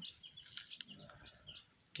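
Young chicks peeping faintly, a scattering of short high chirps.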